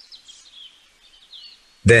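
Faint high-pitched bird chirps and tweets, wavering and intermittent. A narrating voice starts just before the end.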